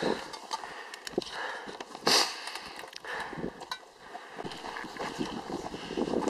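Footsteps on a stony mountain trail: scattered clicks and scuffs of boots on rock and gravel over light wind on the microphone, with one brief louder rush of noise about two seconds in.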